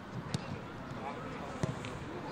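Two sharp thuds of a football being kicked, a little over a second apart, over players' voices on the pitch.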